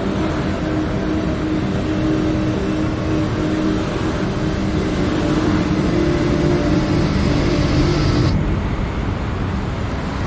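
Car engine running with road noise, from the music video's soundtrack, with no music over it. A steady low engine hum runs throughout, and the higher hiss stops suddenly about eight seconds in.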